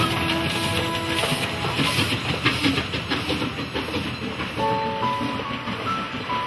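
Narrow-gauge steam train rolling past close by, its wheels clattering over the rail joints, mixed with background music.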